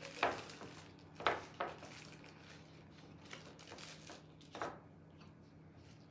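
Clear plastic bag crinkling and rustling in gloved hands as it is opened and folded over the rim of a drinking glass, in a few short bursts with pauses between. A faint low hum runs underneath.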